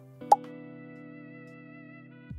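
Soft background music holding a steady chord, with a single short plop near the start.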